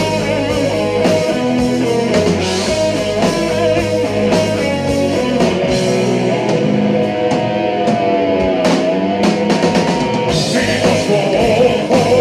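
Heavy metal band playing live: distorted electric guitar over bass and drum kit at full volume, with a guitar note bending in pitch around the middle, and the band growing brighter and fuller near the end.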